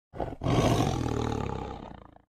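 Tiger roar sound effect: one roar of about two seconds, with a short catch just after it starts, then a long fading tail.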